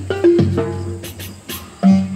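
Live percussion accompaniment in a pause of the words: a few ringing pitched drum tones, each fading out after about half a second, with a strong new one near the end, and a few light high taps.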